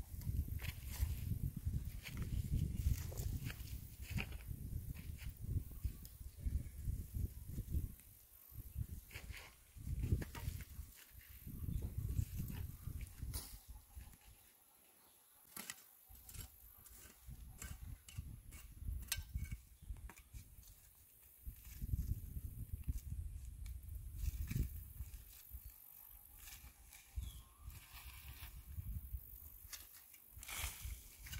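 Garden hoe scraping and chopping through dry soil, weeds and corn stalks in irregular strokes. A low rumble comes and goes underneath, dropping away for a moment about halfway through.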